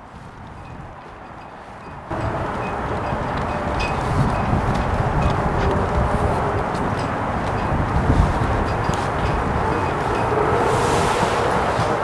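Steady wind noise buffeting the microphone outdoors, starting abruptly about two seconds in, with a brief high rushing whoosh near the end.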